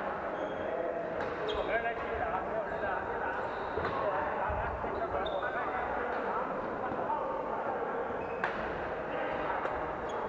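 Badminton play in a large hall: a steady background of many people talking, broken by a few sharp hits of rackets on shuttlecocks and short squeaks of shoes on the wooden court floor.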